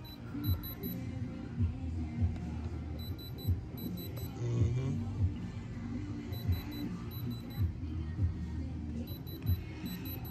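Handheld electronic diamond tester beeping in quick groups of short, high beeps, again and again, as its probe touches the stones of a ring: the tester's signal that it reads diamond. Background music with a beat plays underneath.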